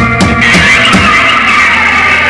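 Live rock band playing: a few sharp drum hits, then from about half a second in a sustained ringing chord with cymbal wash as the song's ending rings out.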